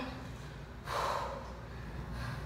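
A woman's single hard, breathy exhale of exertion about a second in, over a low steady hum.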